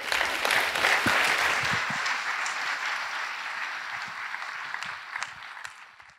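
Audience applauding, loudest about a second in and then slowly dying away, with a few scattered single claps near the end.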